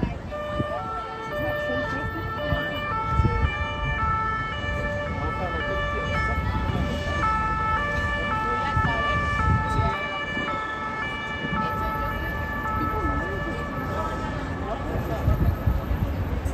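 A two-tone emergency-vehicle siren of the French kind, alternating between a high and a low note about every half second, rising up from the streets over a low hum of city traffic. It stops near the end.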